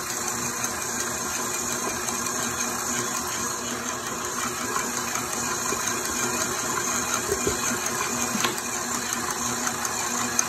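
KitchenAid stand mixer running steadily at speed four, its dough hook kneading bread dough in a stainless steel bowl.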